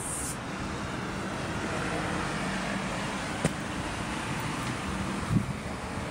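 Steady street traffic noise with a motor vehicle's engine running close by, a low even hum under it. A light click comes about halfway through and a short knock near the end.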